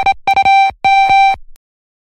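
Phone ringing sound effect: a steady electronic ring tone in short repeated bursts, each opening with a quick rattle of clicks. The ringing stops about a second and a half in.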